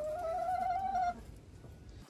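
A chicken giving one long, steady call that rises slightly in pitch and stops about a second in.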